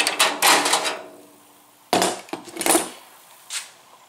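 A corrugated plastic hose and a 3D-printed plastic split ring being handled against a metal cart frame. A scraping rustle fades out within the first second. Then a sharp knock comes about two seconds in, a short clatter follows, and a light tap near the end.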